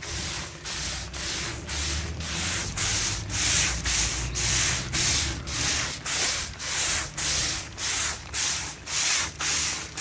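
Hand-held pressure sprayer spraying liquid foliar fertilizer onto bean plants. A rubbing whoosh pulses about twice a second over a steady spray hiss.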